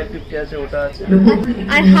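Mostly speech: people talking, with more voices underneath.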